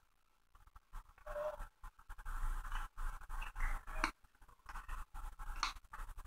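Paper-money dollar bill rustling and crinkling as it is folded and creased by hand, in irregular scratchy bursts with a few sharp clicks, after a brief silence at the start.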